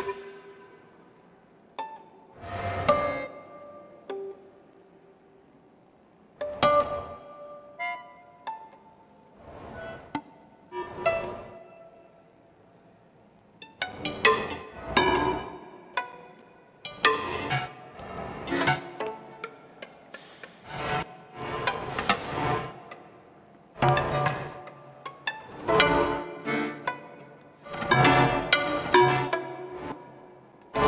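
Contemporary chamber music for violin and bayan (button accordion): sparse, separate plucked and short attacked notes with pauses between them, growing into denser, busier clusters of notes about halfway through.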